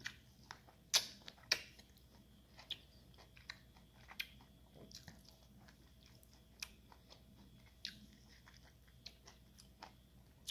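A person chewing juicy loquat flesh close to the microphone: faint, scattered wet mouth clicks and smacks, the loudest two about a second and a second and a half in.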